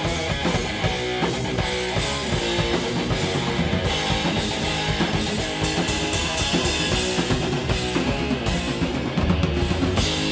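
Heavy metal band playing live: electric guitar, bass guitar and a drum kit with cymbal crashes, at a loud, steady level.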